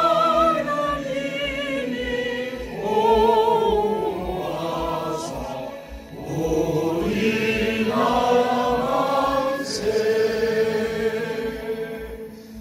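A roomful of people singing a song together in unison, in long held notes. The phrases break off briefly about three and six seconds in.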